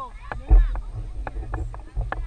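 Sideline voices talking, with a low rumble of wind buffeting the microphone that surges about half a second in and is the loudest sound.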